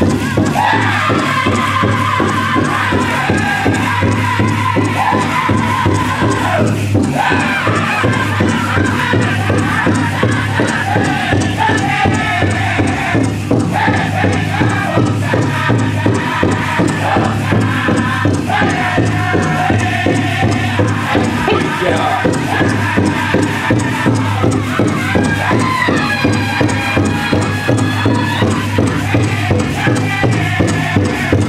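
Powwow drum group singing a jingle dress song: several voices in high, falling phrases over a steady, even beat on the big drum, the singing breaking off briefly twice. The metal cones of the dancers' jingle dresses shimmer under it.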